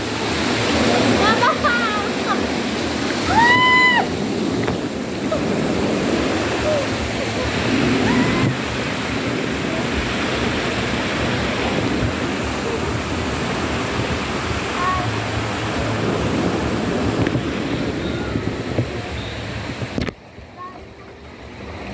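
Steady rush and splash of water in a water-park lazy river, with a water curtain pouring down from a footbridge. Two short high-pitched cries stand out about one second in and just before four seconds in.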